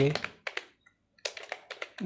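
Typing on a computer keyboard: quick runs of keystroke clicks, with a short pause about a second in.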